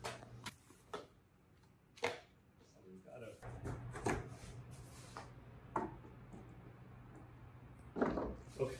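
Handling noise from a large wooden painting panel being lifted and moved over a table covered in newspaper and plastic: scattered knocks and rubs of wood and paper, with a low steady hum coming in about three and a half seconds in.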